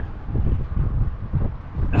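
Wind buffeting the camera microphone: an uneven low rumble that swells and drops in gusts.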